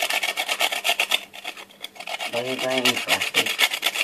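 Food being rubbed across a hand grater: fast, repeated rasping strokes, several a second, with a short pause about halfway through.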